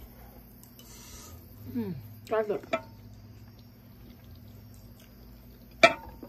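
Eating sounds from a bowl of soup: a short slurp about a second in, then a hummed "mm" of enjoyment that glides up and down in pitch, and a sharp click near the end.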